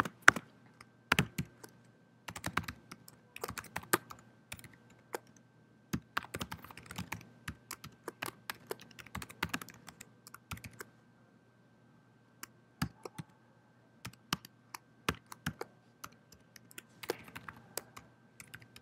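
Typing on a computer keyboard in irregular bursts of key clicks with short pauses, as a PowerShell command is entered; a gap of about a second and a half falls around eleven seconds in.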